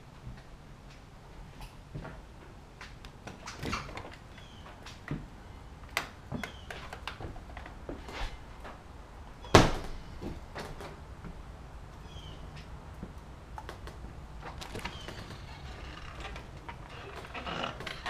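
Wooden screen doors and footsteps on old board floors and a porch: scattered knocks and clicks, with one sharp bang about ten seconds in, the loudest of all, like a screen door slapping shut.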